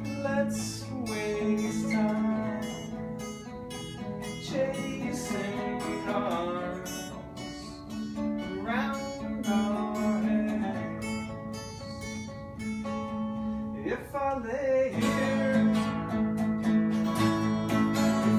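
Two acoustic guitars playing a tune together, picked and strummed, with sustained low bass notes and a few notes that slide in pitch.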